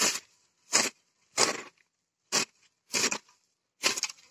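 Hoe blade scraping through soil and grassy weeds, pulled along the ground rather than lifted, in about six short strokes at a steady working pace.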